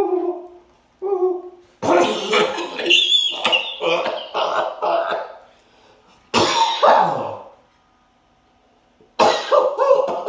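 A man coughing and choking on corn in a long fit: a quick run of harsh coughs, two more after a moment, a short pause, then coughing again near the end. It opens with a couple of short pitched vocal sounds.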